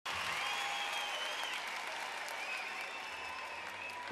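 Large arena audience applauding, a dense steady clatter of clapping with high voices rising and falling above it.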